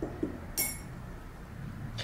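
A single short, ringing clink about half a second in, a paintbrush knocking against a hard container such as the painter's water jar or paint pot.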